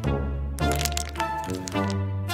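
Background music with a run of crisp cracks as M&M's candy is crunched.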